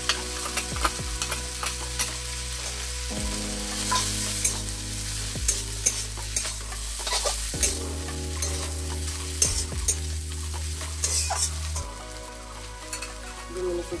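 Greens frying in an aluminium kadai, sizzling, while a flat spatula stirs and turns them, scraping and clicking against the pan many times over.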